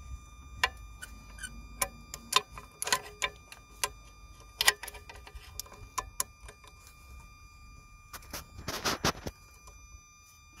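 Irregular metallic clicks, taps and clinks of a diesel injector fuel pipe and its union fittings being handled and worked loose, with a quick run of clattering near the end.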